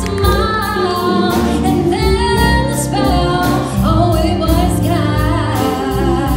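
A woman singing live into a microphone, her long notes wavering with vibrato, backed by electric guitar and a drum kit with steady cymbal strokes.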